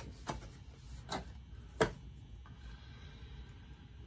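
Three light clicks of small game pieces and objects being handled on a tabletop board game, the loudest a little before two seconds in, then faint room tone.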